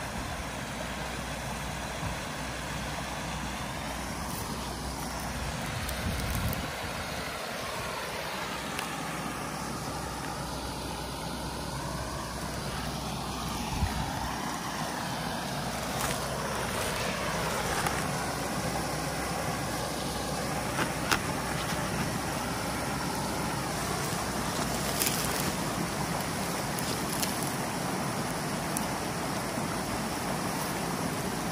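Water rushing steadily through a breach in a beaver dam, pouring over a small drop as foaming whitewater into the ditch below, with a few faint knocks along the way.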